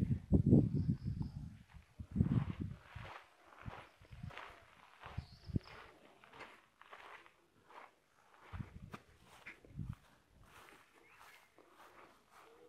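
Footsteps of someone walking across paved ground, uneven and irregular, with heavier low thumps in the first three seconds.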